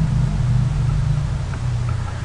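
Steady low hum with a faint even hiss: background noise of the recording between spoken phrases.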